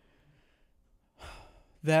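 A short pause, then about a second in an audible breath drawn before speaking, and a voice starts talking near the end.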